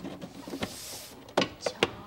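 Dishes being washed in a kitchen sink: a brief hiss about half a second in, then a few sharp clinks of dishware.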